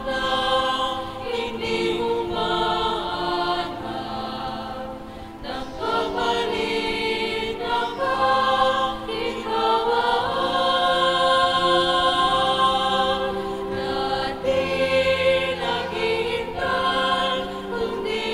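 Choir singing a slow hymn in long held notes.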